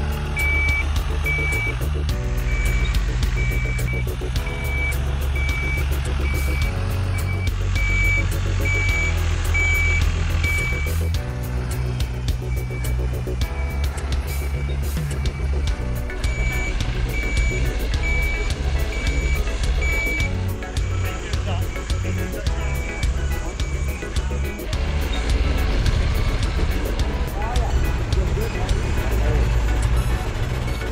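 Truck's reversing alarm beeping at a steady rate of about once a second, with a short break about 11 seconds in, stopping around 20 seconds in. Background music plays underneath.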